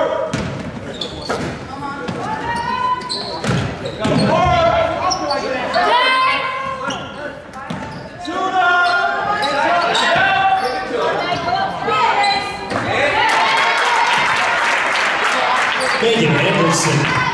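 Echoing school-gym game sound: a basketball dribbling on a hardwood court amid shouting voices from players and spectators. The voices thicken into a wash of crowd noise near the end.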